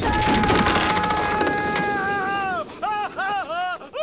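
A wooden catapult is fired, a sudden loud crash and rush of noise, as a man in its seat is flung into the air with one long held scream that falls away after about two and a half seconds, followed by a string of short yells.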